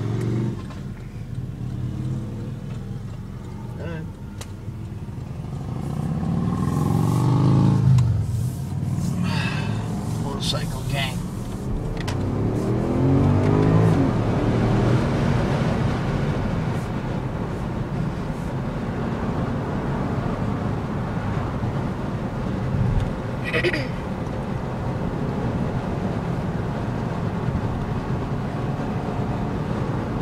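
Porsche Panamera S's 4.8-litre V8 heard from inside the cabin as the car pulls away and accelerates. The engine note climbs and grows louder twice, about six to eight seconds in and again around twelve to fourteen seconds, then settles to a steady running sound as the car cruises.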